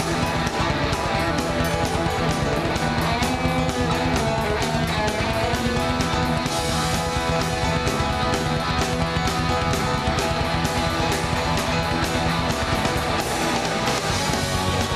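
Live rock band playing: electric guitar strummed over a full drum kit, with a steady run of cymbal hits.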